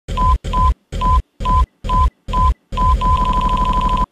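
Film-leader countdown sound effect: six short mid-pitched beeps, a little over two a second, each with a deep rumble under it. The seventh runs on into one long beep over a fast rattle, which cuts off suddenly at the end.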